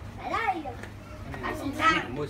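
Excited, high-pitched child's voice: a short call about half a second in and a louder one near the end, with other voices in the background.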